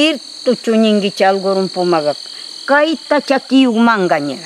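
A woman speaking in Pastaza Quichua, pausing briefly midway, over a steady high-pitched drone of rainforest insects.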